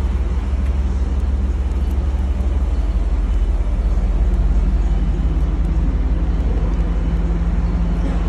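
Third-generation Chevrolet Camaro convertible's engine idling with a steady low rumble.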